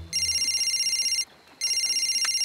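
Cartoon mobile phone ringing: two high, rapidly trilling electronic rings, each about a second long, with a short pause between them.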